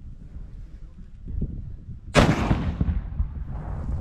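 A single shot from a shoulder-fired M3 Carl Gustaf recoilless rifle about two seconds in: a sharp report that dies away over about a second. Wind rumbles on the microphone before and around it.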